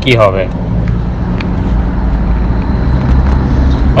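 Steady low rumble of background noise, with a man's voice only at the very start.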